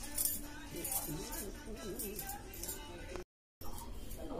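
A woman's wordless vocalizing with a wavering, sliding pitch, and the bangles on her wrists clinking as her hands move in signing.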